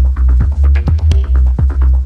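Electronic dance music: a deep bass line pulsing under a steady kick-drum beat, with sharp percussion hits on top.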